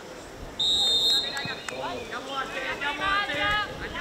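A referee's whistle blows once, a steady shrill note about half a second long, shortly before one second in. Then players' high-pitched voices shout and call out on the pitch.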